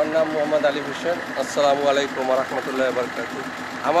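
A man's voice speaking, with the steady low hum of an idling vehicle engine underneath.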